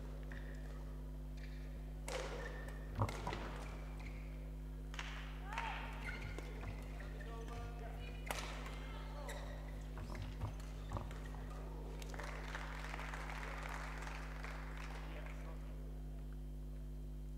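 Badminton rally: a shuttlecock struck back and forth with rackets, heard as a string of irregular sharp hits from about two seconds in to about eleven seconds, over a steady electrical hum. A stretch of softer noise follows near the end.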